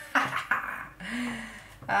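A woman's short wordless vocal sounds, with a couple of light taps near the start as tarot cards are laid on a tabletop.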